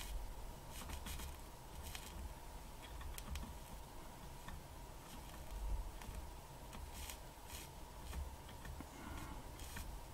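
Faint light ticks and scrapes of a soldering iron tip working the pins of a USB 3.0 micro-B jack on a circuit board, over a low hum and a faint steady high tone.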